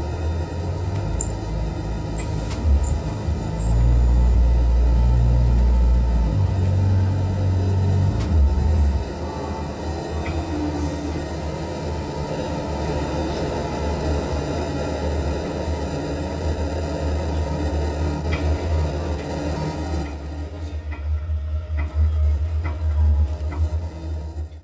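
Live experimental electronic music built on a heavy, rumbling low bass drone with scattered high electronic clicks and glitches. The drone swells loudest a few seconds in, drops back after about nine seconds, and breaks up near the end.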